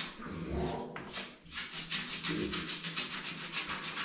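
A bristle brush scrubbing a micro pig's soapy back, starting about a second in and going on in quick, even strokes.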